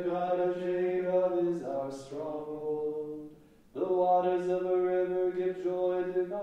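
Liturgical chant from the Vespers psalmody, sung on long, level notes in two phrases with a brief breath about three and a half seconds in.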